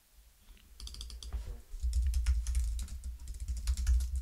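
Computer keyboard typing: a fast run of keystrokes that starts about a second in.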